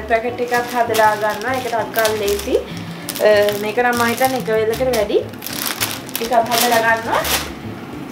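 A woman talking, with the plastic bag of a salad kit crinkling now and then as she handles it, most of all in the second half.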